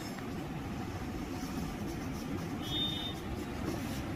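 A steady low background rumble, with a brief faint high tone about three seconds in.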